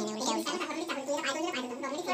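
A person's voice talking throughout, with no sewing-machine motor heard.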